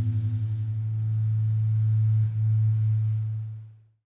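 A single low sustained note rings out as the song ends. It wavers quickly at first, settles into a steady hum about a second in, and fades out to silence near the end.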